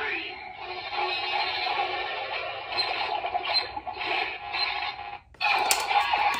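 Dreadriver transformation-belt toy playing its electronic music and synthesized voice call for a Ride Chemy Card. The sound cuts off about five seconds in, and after a brief gap a new burst of belt sound begins.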